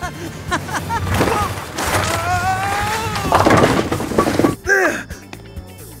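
Cartoon action sound effects over music: a noisy rush with a gently rising tone, then a loud clattering crash of impacts about three and a half seconds in, dying away before the end.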